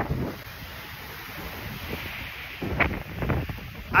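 Wind blowing across a phone's microphone, an even rushing noise with a few louder, rumbling gusts buffeting the mic during the last second or so.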